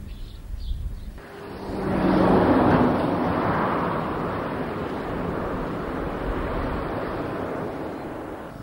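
Road traffic with heavy lorries passing: a wash of engine and tyre noise that comes in about a second in, is loudest a second or two later, and then runs on steadily.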